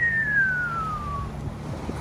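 A single clean whistle that falls steadily in pitch over about a second and a half, over the steady low hum of a small boat's outboard motor and the wash of river rapids.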